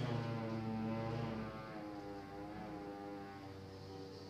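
A man's long, unbroken hum ('mmm') on a low, steady pitch that wavers slightly, louder for the first second and a half and then softer.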